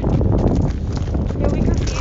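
Wind rumbling on a hand-held phone's microphone while walking, with irregular footsteps on a path.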